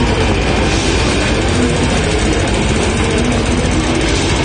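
Death metal band playing live: heavily distorted guitars over fast, dense drumming, a steady loud wall of sound.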